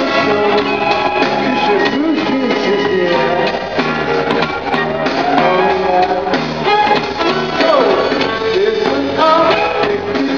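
Live pop-rock music: a man singing over piano with other instruments behind him.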